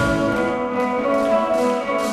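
Live instrumental music: held chords on a Nord Electro 3 stage keyboard with an acoustic guitar.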